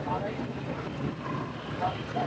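Steady low rumble of open-air street background noise, with faint voices in the background.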